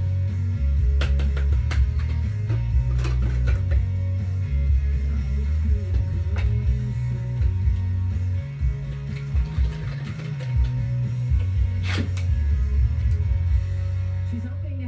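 Music with guitar and a strong bass line, playing from a country radio station, with a few sharp clicks over it, the loudest near the end.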